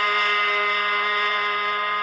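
Harmonium holding a steady, unchanging chord, its reeds sounding several tones at once.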